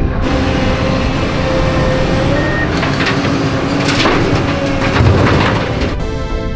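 A heavy vehicle engine running loudly amid a dense rushing noise, its pitch rising slightly about two seconds in. Several sharp knocks come between about three and five seconds in.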